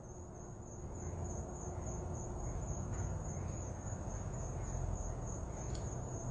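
Faint, steady high-pitched cricket trill over a low background hum.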